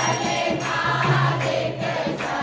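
Devotional aarti hymn sung by a group of voices with music, over a steady, repeating percussion beat.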